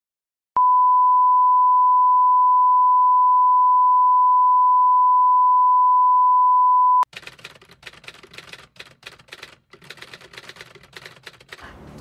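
A loud, steady 1 kHz reference test tone, the line-up tone that goes with SMPTE colour bars. It starts about half a second in and cuts off sharply at about seven seconds. After it come faint, irregular clicks and crackles.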